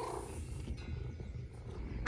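A domestic cat purring close to the microphone: a steady low rumble.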